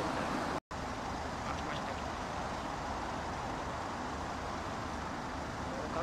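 Steady road-traffic noise from a city street, an even hum and rumble of passing cars. The sound cuts out completely for a moment about half a second in, then returns.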